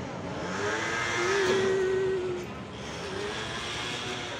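A car passing on the street, its engine and tyre noise swelling to a peak about a second and a half in and then fading.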